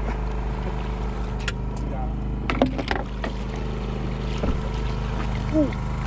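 A small engine running steadily with a constant hum, with a cluster of sharp knocks and rattles about two and a half seconds in.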